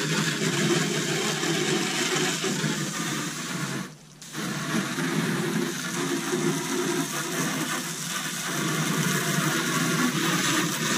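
Garden hose spray nozzle spraying water against the front wall of an enclosed cargo trailer, a steady hiss of spray that breaks off briefly about four seconds in.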